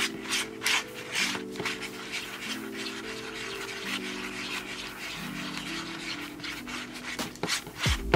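Thick lip gloss base being stirred by hand, the utensil scraping and rubbing against the container in repeated strokes, with soft background music of sustained chords underneath.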